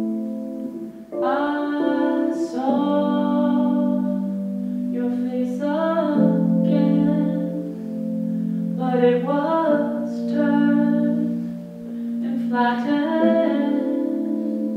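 A woman singing four separate phrases over steady held chords from a keyboard and electric guitar, in a live amplified performance.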